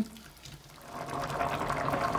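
A pot of vegetable-and-meat soup bubbling at a boil, the bubbling swelling up about a second in and then going on steadily.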